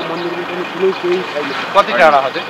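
A man speaking in conversation, with a single sharp click shortly before the end.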